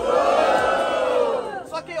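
Crowd of rap-battle spectators letting out a loud, drawn-out collective "uhh!" that rises and then falls in pitch and dies away about a second and a half in: their reaction to a punchline that has just landed.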